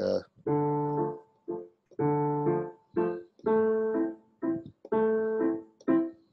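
Roland digital piano playing a waltz vamp on the chord progression. A longer-held chord comes about every second and a half, with shorter chords between, in a steady oom-pah-pah pattern.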